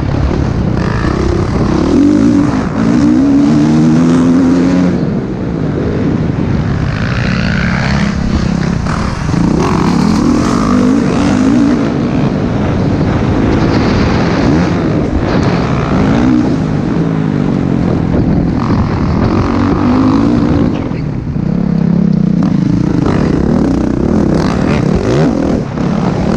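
Motocross bike engine heard from onboard, revving up and falling back again and again every few seconds as the throttle opens and shuts through corners and jumps.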